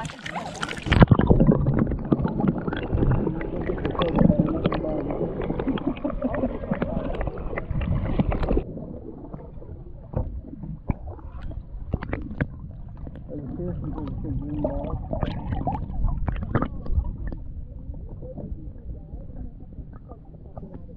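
Water sloshing and splashing around a kayak, with scattered knocks against the boat, louder in the first half and quieter after about eight seconds.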